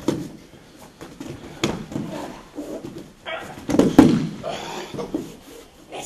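Bodies falling and scuffling on a padded training mat during a throw and grappling, with several thuds, the loudest about four seconds in.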